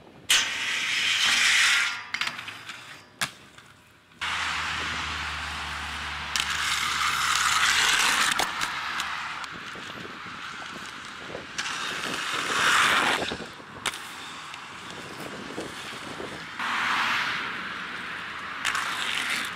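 Aggressive inline skates grinding down a metal handrail: a loud scraping hiss lasting about two seconds, then a click. After an abrupt change about four seconds in, a longer stretch of rough scraping noise rises and falls several times.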